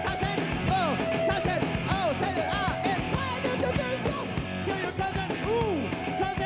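Punk rock band playing live, full and loud, with a high line swooping up and down in pitch over and over above the drums and guitars.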